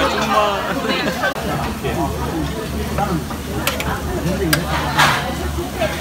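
Meat sizzling on a tabletop barbecue grill under the chatter of restaurant diners, with a few sharp clicks in the second half.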